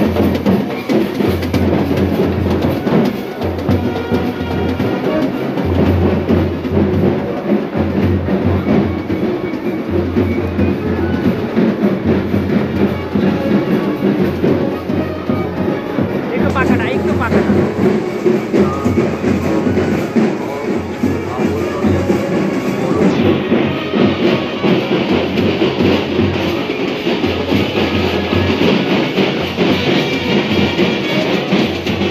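Procession band music: drums keep a steady beat under other instruments playing without pause.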